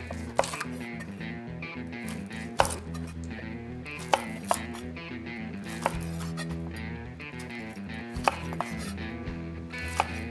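A large chef's knife cutting between the bones of a rack of grilled baby back ribs and knocking on a wooden cutting board, about seven sharp knocks at uneven intervals. Background music plays under the cuts.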